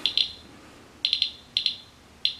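Geiger counter clicking irregularly in short, high chirps: two near the start, a quick run of four about a second in, then two more. It is a low count rate from a green uranium-glass cup that is not high in uranium.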